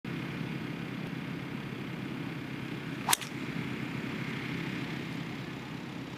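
Golf tee shot: a single sharp crack of the club face striking the ball about three seconds in, the loudest moment, over a steady low background rumble.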